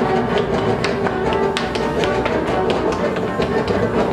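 Live free-improvised acoustic group music: bowed cello and piano, with a busy, irregular run of sharp percussive taps several times a second.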